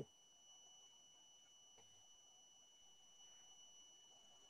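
Near silence: a quiet call line with a faint, steady, high-pitched tone underneath and a tiny click about halfway through.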